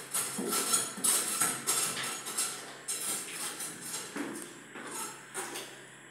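Irregular metallic clicks and clinks of hand tools worked against an electrical fitting on a wall, coming thick and fast at first and thinning out toward the end.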